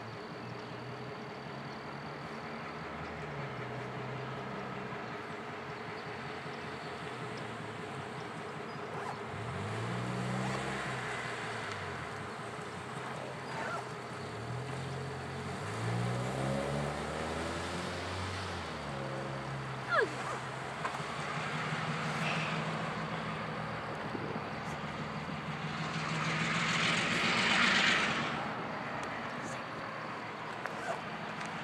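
Diesel switcher locomotive engine idling, then revving up and settling back several times, its pitch rising and falling. A sharp short squeal cuts in about two-thirds of the way through, and a loud burst of hiss comes near the end as the locomotive moves off.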